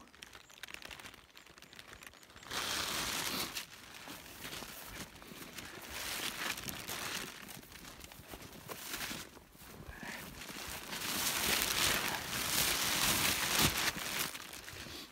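Dry weed stalks and grass rustling as someone pushes through them. The rustling comes in irregular surges from about two and a half seconds in and is loudest near the end.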